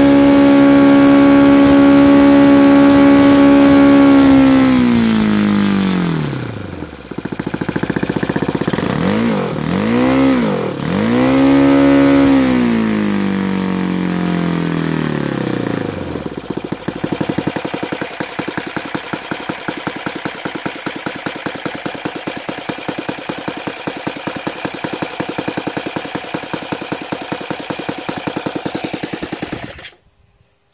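Saito FG36 single-cylinder four-stroke gasoline model aircraft engine on a CH CDI ignition, turning an 18x6 propeller on a test stand: it runs at full throttle, is throttled back, blipped up twice, then brought down to a low idle around 1300 rpm with a steady pulse of firing strokes.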